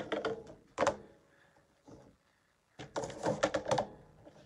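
Plastic paper trimmer being set down on a craft table and cardstock handled: a sharp knock just under a second in, a quiet pause, then a run of quick clicks and knocks near the end.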